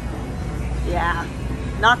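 Supermarket background noise: a steady low rumble under a faint hiss, with a woman's short vocal sounds about a second in and again near the end.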